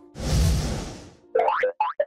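Cartoon sound effects: a broad whooshing burst with a low thump about a fifth of a second in, then a quick run of three or four short springy boings near the end.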